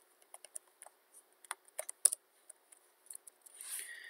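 Faint, irregular clicking of a computer keyboard and mouse while text is deleted in a document, about a dozen sharp clicks at uneven intervals. A short soft hiss comes near the end.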